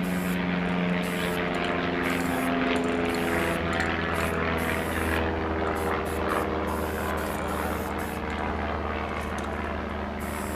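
An aerosol spray-paint can hissing in short repeated bursts as lines are sprayed. Under it runs a louder steady engine drone, several tones that slowly shift in pitch.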